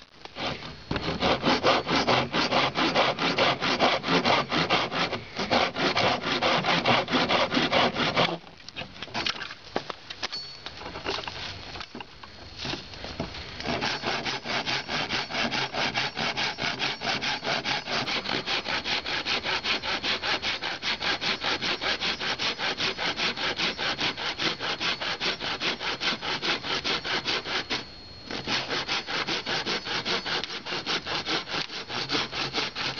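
The saw-toothed back of a Gerber Gator machete cutting a tree branch in quick back-and-forth strokes. There is a hard run of strokes for about eight seconds, a few seconds of lighter strokes, then steady sawing again with a short break near the end.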